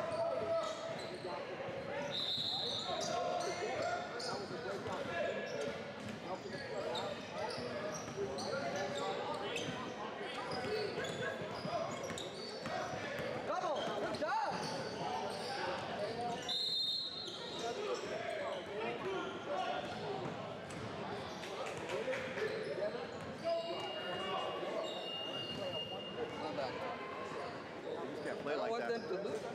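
Basketball game sounds in a gym with a hardwood court: a ball bouncing on the floor, a few short high squeaks from sneakers, and indistinct voices of players and spectators, all echoing in the hall.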